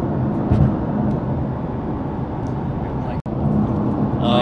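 Steady cabin noise of a Nissan GT-R R35 on the move: a low drone from its twin-turbo V6 with road and tyre noise. The sound cuts out briefly about three seconds in.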